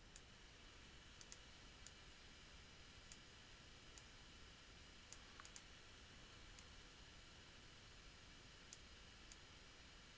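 Faint computer mouse clicks, about a dozen scattered ones with some in quick pairs, over low room hiss.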